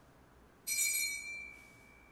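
A single bright metallic strike, struck once about two-thirds of a second in. It rings on one high, steady bell-like tone that fades over about a second and a half.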